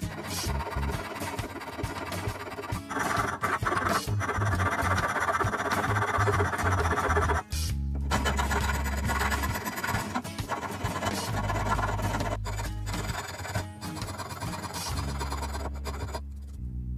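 Background music with a steady bass line, over the repeated rasp of a hand file worked back and forth across a wooden knife handle.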